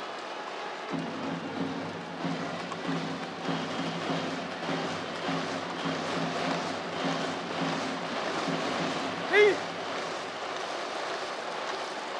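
Baseball stadium crowd with a cheering section's rhythmic music and chanting, starting about a second in. A single brief, loud call rises above the crowd near the end.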